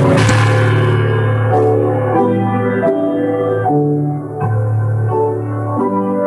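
Solo piano playing a slow passage of sustained chords over held bass notes, the harmony changing about every half second to second.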